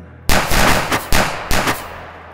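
Gunfire sound effect: several loud shots in quick succession, the first about a quarter second in, each with a reverberant tail that dies away near the end.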